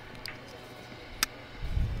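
Vosteed Nightshade LT ball-bearing flipper knife worked by hand: one sharp click a little past a second in as the blade snaps into place.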